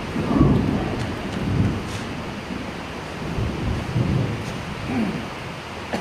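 Low rumbling noise that swells and fades a few times over a steady hiss.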